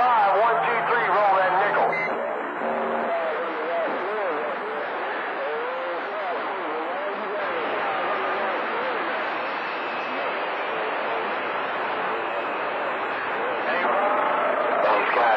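CB radio receiving distant channel 28 skip, long-range signals that fade and blur. A clearer voice comes in the first two seconds, then weaker, garbled talk is buried in a steady hiss of static.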